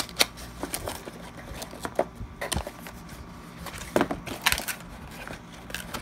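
A small cardboard box and the plastic wrap inside it being handled and pulled open: irregular crinkles, scrapes and light knocks, a few louder around the middle.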